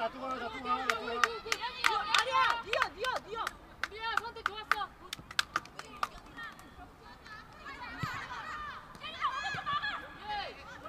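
Women footballers shouting short, high-pitched calls to each other on the pitch, densest in the first few seconds and again near the end, with scattered sharp cracks in between.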